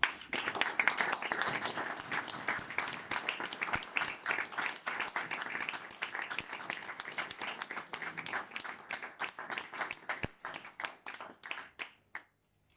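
Audience applauding: dense, steady clapping that gradually thins out to scattered claps and stops near the end.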